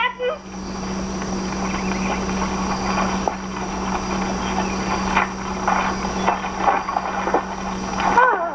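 Horse-drawn buggy arriving on a dirt drive: irregular clops of hooves and wheel noise, more frequent in the second half, over a steady hiss and low hum.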